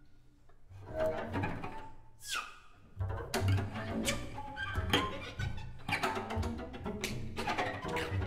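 Freely improvised music for bowed strings: violin, cello and double bass. It starts sparse and quiet, a quick high glide falls steeply a little after two seconds in, and from about three seconds in the playing turns dense, with low bass notes under many sharp, scratchy bow strokes.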